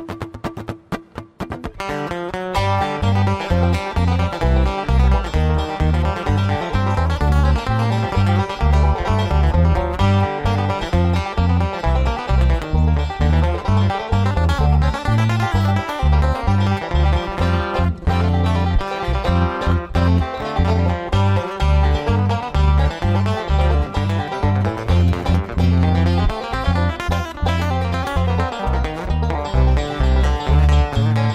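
Instrumental bluegrass played by a trio on banjo, acoustic guitar and electric bass guitar. After a sparse opening the full band comes in about two seconds in with quick banjo picking over a steady bass line.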